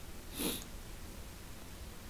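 A single short sniff through the nose, about half a second in, over a faint steady low hum.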